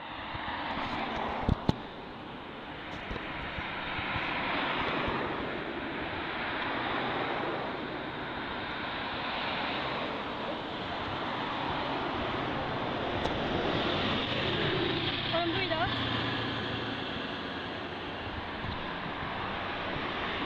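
Steady rushing street noise outdoors that swells and fades slowly, with a sharp click about a second and a half in and a faint voice in the background a little past the middle.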